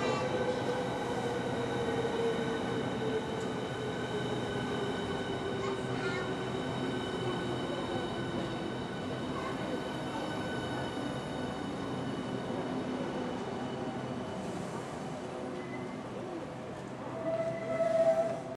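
Class 395 'Javelin' electric multiple unit slowing to a stop alongside a platform: a rumble of wheels on rail under an electric whine that falls slowly in pitch as it brakes. Near the end a higher steady tone comes in, briefly louder.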